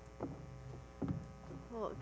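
Steady electrical mains hum in the hall's audio, with two soft knocks at the lectern, about a quarter second and a second in.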